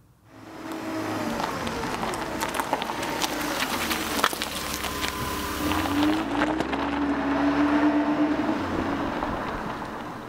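A vehicle engine running, its pitch rising and falling a little, with scattered clicks. It fades in just after the start and tapers off toward the end.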